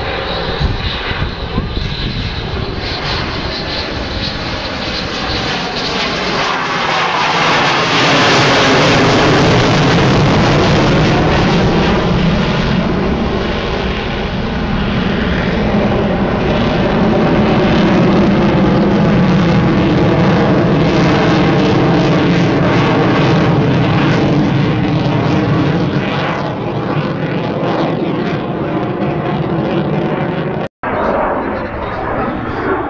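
F-16 fighter jet flying overhead: a loud, continuous jet roar that swells about seven seconds in and stays strong, with a slow phasing sweep running through its tone.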